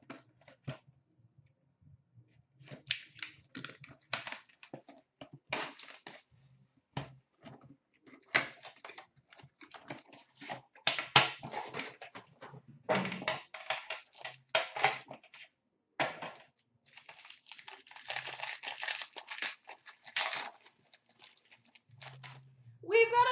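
A hockey card box and its packaging being torn open and handled: irregular crinkling, tearing and rustling of cardboard and wrapping, beginning about three seconds in, with a short pause near the end.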